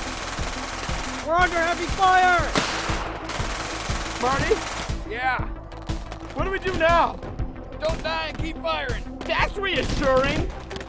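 Automatic gunfire, many rapid shots in quick succession, with shouting voices cutting in and a music bed underneath.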